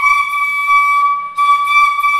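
A six-pitch Carnatic flute holding one steady note, broken for a moment a little over a second in and then taken up again on the same pitch.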